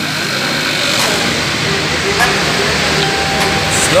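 City street traffic noise, a steady rush of engine and tyre sound as a car moves past close by.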